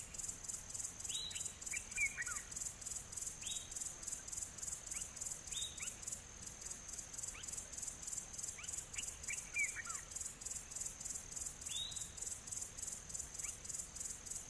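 Faint outdoor ambience: a steady, evenly pulsing insect chirring high up, with scattered short downward-sliding bird calls, a few coming in quick runs of two or three.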